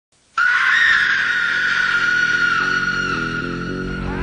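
A woman's long, high scream, the scream of a female zombie, starting suddenly and held at one pitch. Beneath it, music with low notes climbing in steps.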